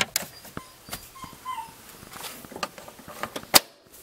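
Scattered light clicks and rustles of hands and the camera being handled inside a car's cabin, with one sharp click shortly before the end.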